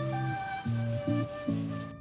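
Hand sanding of a painted car body panel with a sanding sponge, repeated scratching strokes, under a background music track of held notes and bass.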